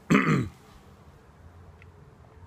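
A man clears his throat once, briefly, right at the start, followed by a faint steady low hum.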